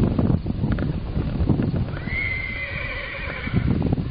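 Wind buffeting the microphone in uneven low surges. About halfway through comes a high, drawn-out animal call with overtones, lasting about a second and a half.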